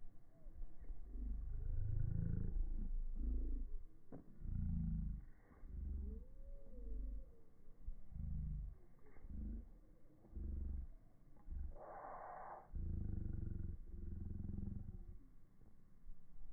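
Wind buffeting the phone's microphone: a low rumble in uneven gusts that rise and drop every second or so, with one brief brighter rush about twelve seconds in.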